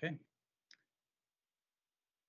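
The end of a spoken "okay", then a single short faint click, then dead silence on the video-call audio.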